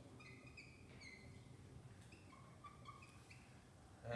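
A dry-erase marker squeaking faintly on a whiteboard while a word is written: a string of short, high chirps with brief gaps between them.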